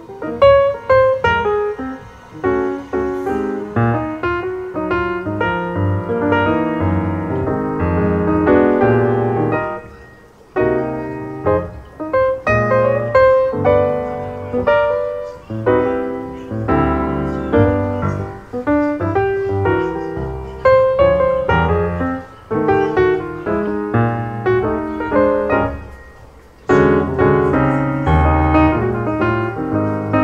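Background piano music, a run of separate notes with short pauses between phrases about ten seconds in and again near twenty-six seconds.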